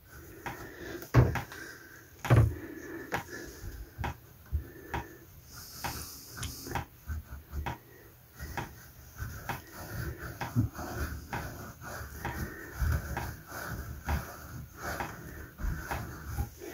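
Wire wool scrubbing inside the open body of a chrome bath mixer tap, cleaning the valve seat after the headgear has been removed: irregular scratching and rubbing with scattered light metallic knocks.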